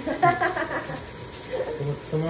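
A person's voice in short exclamations, with no clear words, over a faint steady hiss.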